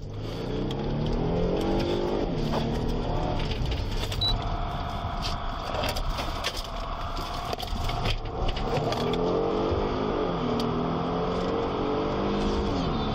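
Police patrol car's engine accelerating hard in pursuit, its pitch rising and falling several times as it pulls away and gathers speed, heard from inside the car.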